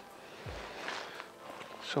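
Faint outdoor background noise with one soft, low thump about half a second in; a man begins to speak at the very end.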